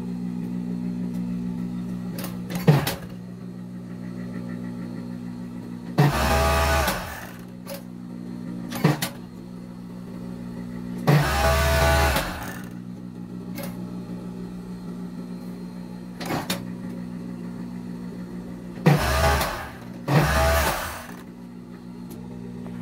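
Industrial overlock (serger) sewing machine closing the armhole and neckline seams of a two-layer knit top. Its motor hums steadily throughout, and there are four short runs of stitching, each about a second long, with a few sharp clicks in between.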